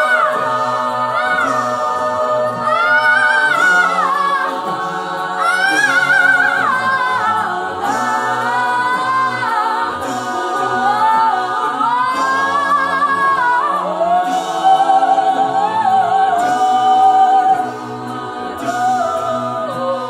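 Mixed a cappella choir singing held chords, with a female soloist belting wordless, sliding phrases high above them in the first part. The level drops somewhat near the end as the choir carries on.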